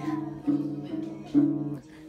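Acoustic guitar strummed by a toddler: about four strums of the same notes, roughly half a second apart, each left ringing. The strings are cut off near the end.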